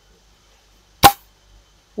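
A single shot from a small-bore air rifle: one short, sharp crack about a second in.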